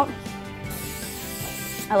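An aerosol can of cooking spray hisses onto a metal sheet tray in one continuous burst of about a second, starting a little under a second in.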